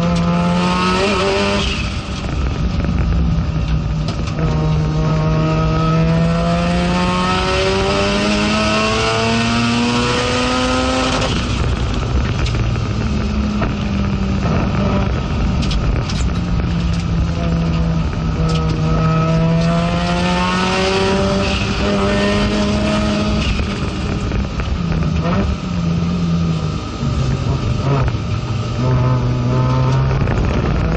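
In-cabin sound of an FD3S Mazda RX-7 race car's rotary engine at racing speed: the engine note climbs steadily under full throttle, breaks at an upshift about eleven seconds in, climbs again, then steps down in quick drops as the car brakes and downshifts near the end.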